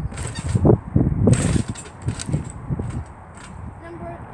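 Trampoline being bounced on: a run of low thuds from the mat and frame, quieter in the last second.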